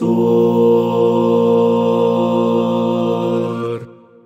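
Four-part a cappella male singing, one voice multitracked as soprano, alto, tenor and bass, holding one steady chord of a hymn. The chord cuts off just before four seconds and leaves a short reverberant tail.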